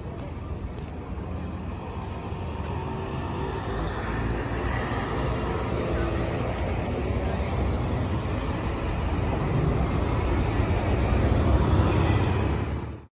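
Road traffic at a city intersection: engines and tyres of passing cars, growing louder toward the end as a city bus drives by close.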